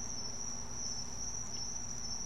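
A steady high-pitched trill, insect-like, over a low background hum.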